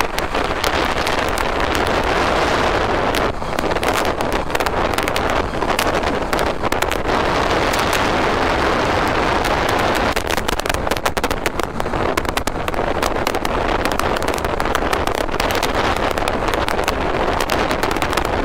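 Wind rushing over the microphone on a Honda CB125R motorcycle at motorway speed: a steady roar with constant crackling buffets, the small single-cylinder engine's drone faint beneath it.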